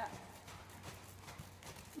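Faint, soft thuds of a horse's hooves cantering on sand arena footing.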